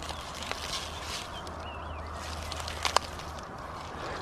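Soil crumbling and onion leaves rustling as a clump of spring onions is pulled up from dry ground by hand, with a single sharp click about three seconds in.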